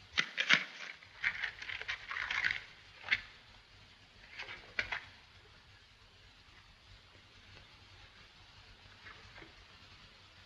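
Clicks and rustling from papers and objects being handled at a desk, in bursts over the first five seconds, then faint.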